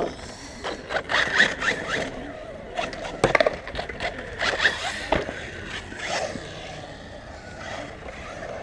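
Arrma Talion BLX brushless RC car driving on concrete: its electric drivetrain whines up and down in pitch as it speeds up and slows, with tyres scraping. There are a couple of sharp knocks, and the sound fades as it moves off after about six seconds.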